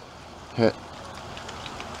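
Steady hiss of rain falling, growing slightly louder over the two seconds.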